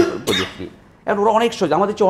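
A man's voice in a studio discussion: a short burst of sound at the start, a brief pause, then speech again from about a second in.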